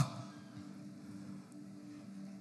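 A pause in speech: faint room tone with two steady low sustained tones, after the falling tail of a man's exclamation at the very start.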